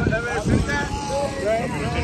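Young children's high-pitched voices chattering and calling over a steady low rumble.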